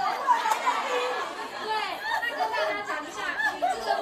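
Chatter of a large seated crowd, mostly women, talking over one another in a big hall.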